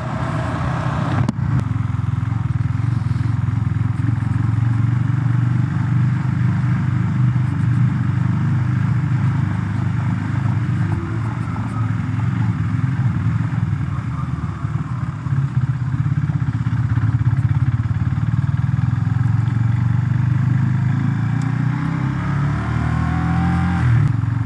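KTM 390 Duke's single-cylinder engine running steadily under way, with its pitch climbing near the end as the bike picks up speed.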